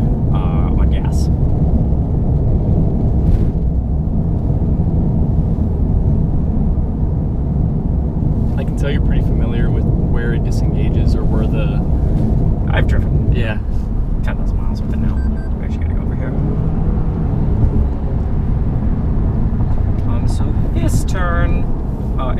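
Steady road and tyre rumble inside a moving Toyota Corolla's cabin, with scattered bits of quiet talk over it.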